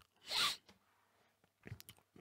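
A man's short, quick breath drawn in close to the microphone between sentences, then a pause with a few faint mouth clicks just before he speaks again.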